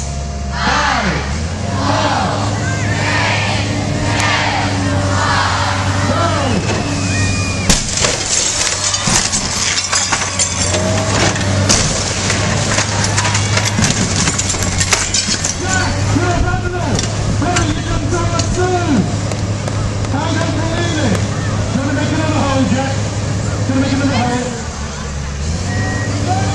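Tracked excavator's diesel engine running steadily while its demolition grab tears into a timber-clad building: a run of sharp cracks and crashes of splintering wood in the middle, with crowd voices and shouts throughout.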